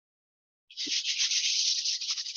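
Toothbrush bristles being flicked rapidly to spatter watercolour paint onto paper: a dense, fast, scratchy spray of strokes that starts a little under a second in.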